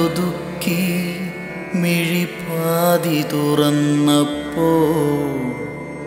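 A slow Malayalam song: a male voice sings long, wavering held notes over a steady sustained instrumental backing, the sound dropping somewhat quieter near the end.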